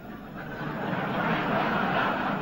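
Large audience laughing together, the laughter swelling steadily louder.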